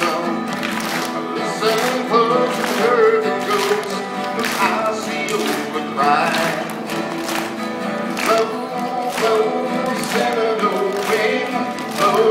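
Two acoustic guitars strummed together in a steady country rhythm.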